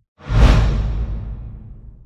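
Transition whoosh sound effect with a deep boom underneath. It starts abruptly a moment in and fades away over the next second and a half.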